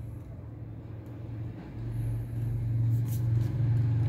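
A low, steady background rumble that swells about halfway through, with a faint click or two shortly before the end.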